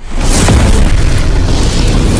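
Cinematic boom sound effect for an animated logo intro: a loud, deep impact that starts suddenly and holds as a heavy, sustained rumble with hiss on top.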